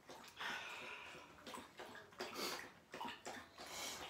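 A faint slurping sip of sangria from a small metal measuring cup, followed by a few soft clicks and knocks.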